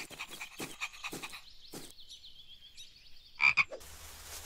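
Cartoon frog sound effects: a few soft taps, then a high warbling trill and a short, louder frog croak near the end.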